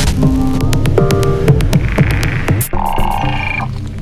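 Electronic music: a deep, continuous bass under sharp clicks and short synthesized tones that change every half second or so.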